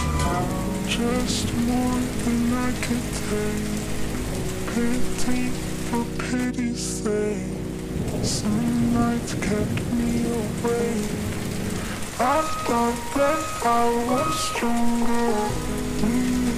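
Steady rain falling, mixed over a slowed-down, reverb-heavy song whose sustained chords and melody notes carry through. A sung word comes in near the end.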